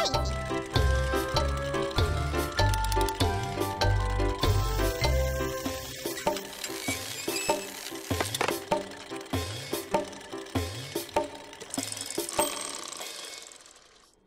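Gentle children's music: a tune of short notes over a steady bass line, the bass dropping out about six seconds in and the lighter, higher notes fading out near the end.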